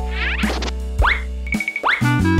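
Cartoon boing sound effects: three quick upward-sliding springy tones about half a second apart, over light children's background music.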